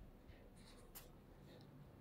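Near silence: faint room tone, with one soft click about a second in.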